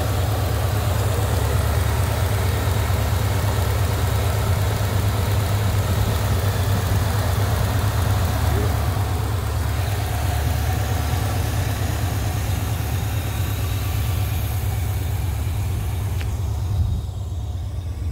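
Supercharged 6.2-litre V8 of a 2010 Camaro SS, with a Magnuson TVS2300 supercharger and long-tube headers without catalytic converters, idling steadily with a deep low hum. A single knock near the end.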